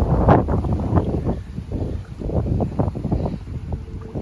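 Strong, gusty wind blowing across the microphone: a low rumbling noise that surges and eases in uneven gusts, strongest just after the start.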